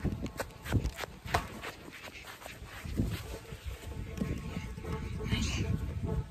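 Wind rumbling on a phone microphone, with scattered knocks and rustles from the phone being handled while moving about on grass.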